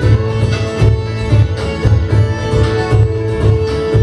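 Live folk band playing an instrumental passage: fiddle over strummed acoustic guitar and banjo, with a steady beat from a plucked double bass.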